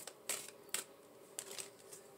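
A few short, crisp flicks of tarot cards being shuffled and drawn from the deck, about four separate clicks spread over two seconds.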